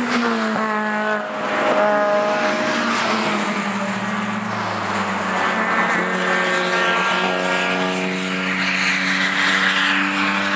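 Cars driving at speed on a race track: engines running hard, one passing close at the start with its pitch falling away, and more engine notes carrying on as other cars come through the corner.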